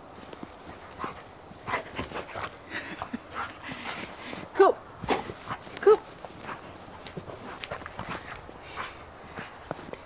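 A dog gives two short barks about halfway through, over scattered crunching steps in snow.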